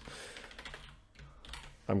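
A few quiet keystrokes on a computer keyboard as a line of code is typed and corrected.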